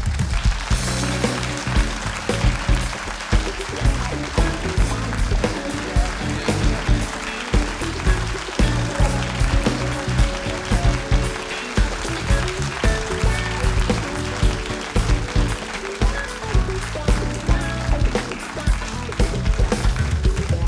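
Live house band of keyboards, guitar, bass and drums playing upbeat walk-on music with a steady beat.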